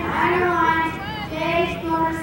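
A child's high-pitched voice, held and bending from syllable to syllable, over a low background hum.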